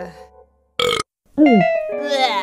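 Cartoon burp sound effects from a character: a short burp about a second in, then a longer one falling in pitch, with light music behind.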